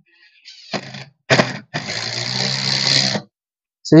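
Cordless impact driver at top speed driving a wood screw into a pine block through a plain bit holder with no clutch. It gives two short bursts, then runs for about a second and a half before stopping, with the screw head sunk below the wood surface.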